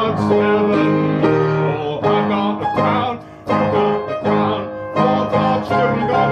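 Upright piano playing a medley of Negro spirituals: repeated chords over a moving bass line, with a short break in the playing a little over three seconds in.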